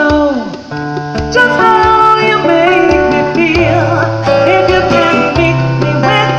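Live acoustic soul music: an acoustic guitar played under a woman's singing voice, with conga drums. The voice slides down in pitch just after the start, the music dips briefly, then carries on with held notes.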